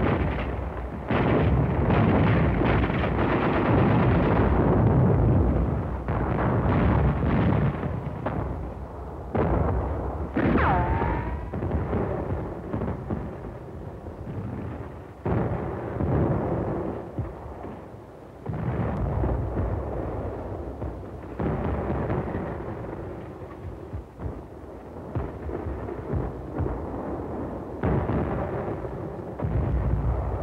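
Battle sound on a 1940s film sound track: a continuous run of artillery shell bursts and gunfire, sudden blasts with rumbling between them, loudest in the first few seconds. A falling whistle sounds about eleven seconds in.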